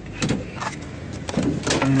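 Car interior noise while driving, with two brief knocks in the first second, then a man's voice starting near the end.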